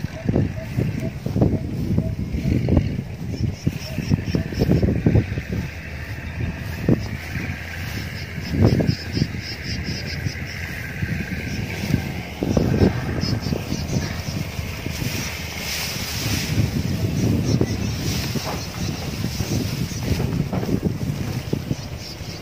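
Wind buffeting a phone microphone in gusts, an uneven low rumble that rises and falls.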